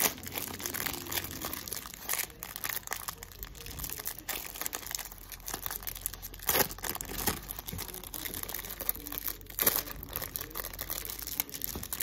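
Clear plastic snack-cake wrapper crinkling and tearing as it is picked at and peeled open by hand, with an irregular run of crackles and a few louder snaps.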